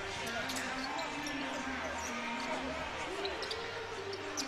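Live game sound from a basketball arena: a ball being dribbled on the hardwood court, with a steady murmur of voices from the crowd and players.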